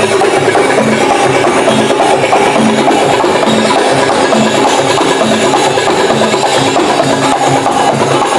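Live Middle Eastern drum band with darbuka playing a steady, repeating rhythm, over a sustained melodic tone.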